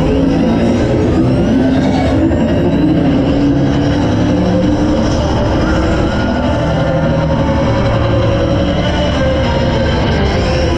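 TRON Lightcycle / Run launched roller coaster racing along its track at speed: a loud, steady rush of wind and wheel rumble. Held tones of the ride's onboard music sit underneath.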